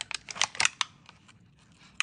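Rapid small clicks and crackles from latex finger cots being rubbed and adjusted on the fingertips, stopping after about a second.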